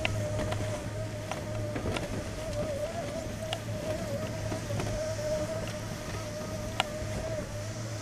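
Conveyor-belt surface lift running: a steady low hum with a slightly wavering whine over it, and a few sharp clicks.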